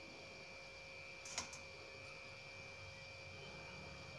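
Faint room tone: a steady electrical hum, with a single light click about a second and a half in.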